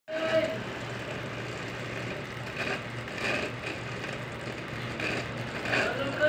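Steady low engine-like hum over a background haze, like a motor vehicle running nearby, with a brief vocal sound at the very start.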